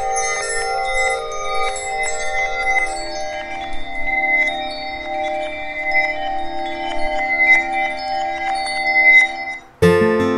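"Magical background" sound effect: shimmering, chime-like tinkles over sustained held tones. The lower notes shift down to a new chord about three seconds in. It cuts off just before the end.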